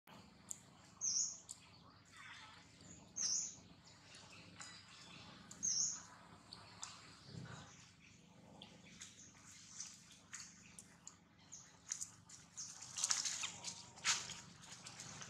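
A bird's short high chirps, three of them about two seconds apart, then a burst of scuffling noise near the end.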